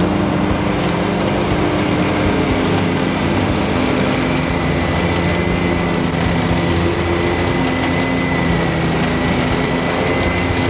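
Wright Stander ZK stand-on mower running at mowing speed with its blades engaged, cutting grass: a steady engine drone with a thin, steady high whine above it.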